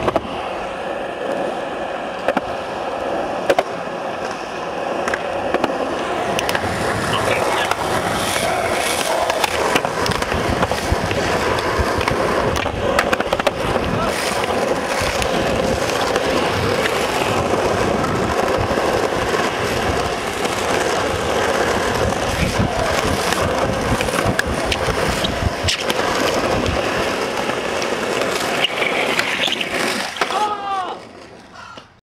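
Skateboard wheels rolling over asphalt, a continuous loud rumble, broken by a few sharp clacks of the board.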